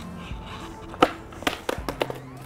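Skateboard popped and flicked into a heelflip attempt on asphalt, landing upside down: one sharp crack about a second in, then a few lighter knocks and clatters near the end as the board hits the ground. Faint background music runs underneath.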